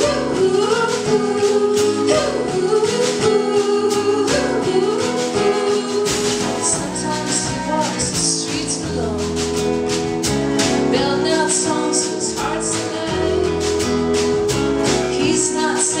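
Live band music: a sung melody with backing voices over instruments and a steady percussion beat.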